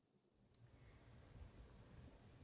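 Near silence: faint room hum with a couple of faint clicks, about half a second and a second and a half in.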